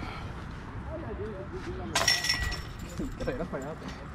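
A disc striking a metal disc golf basket about halfway through, a single sharp chink with a short metallic ring. Faint voices talk quietly around it.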